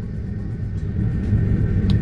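A steady low rumble, with a brief click near the end.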